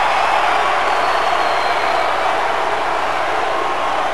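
Large arena crowd cheering, a steady wall of noise that holds at one level throughout.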